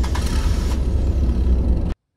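Car driving along a road: a loud, steady low rumble of engine and road noise that cuts off suddenly near the end.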